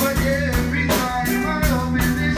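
Rock band demo recording: a drum kit keeping a steady beat with cymbal and snare hits, under bass guitar, guitar and a singing voice.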